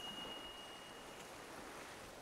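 Quiet soundtrack: a faint steady hiss, with a thin high tone that fades out about a second in.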